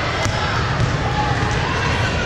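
Busy indoor volleyball hall din: many voices chattering and volleyballs smacking on hands and the hard court floor, with one sharp ball hit about a quarter second in, all echoing in the large hall.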